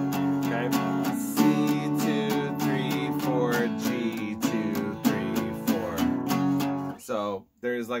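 Steel-string acoustic guitar, capoed at the second fret, strummed in a steady rhythm through a chord progression; the strumming stops about seven seconds in.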